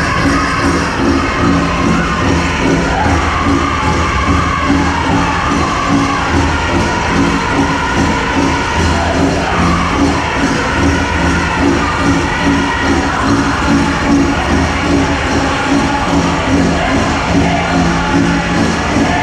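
Powwow drum group playing a grass dance song: a steady, even beat struck together on a large shared drum, with singers' high voices rising and falling over it.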